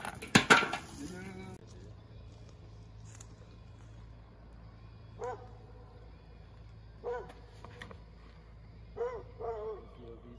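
A putter disc hitting the chains of a disc golf basket: a short metallic chain rattle, followed by a brief shout. Later a dog barks a few times.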